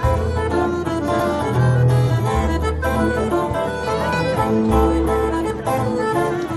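Celtic folk dance music: a melody over held bass notes that change about every two and a half seconds.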